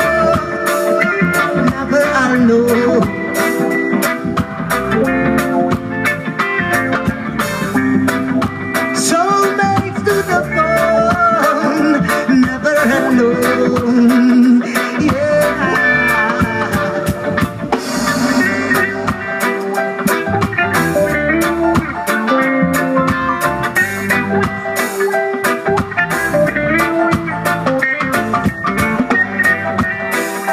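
Live roots reggae band playing an instrumental stretch without vocals: electric guitars, bass, keyboard and drum kit.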